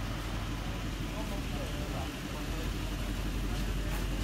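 Mercedes-AMG C63 S Estate's twin-turbo V8 idling steadily through ARMYTRIX catless (decat) downpipes, with people's voices over it.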